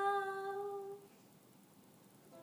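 A woman's singing voice holds the song's last note ("now") at a steady pitch, fading out about a second in, then near-quiet room tone.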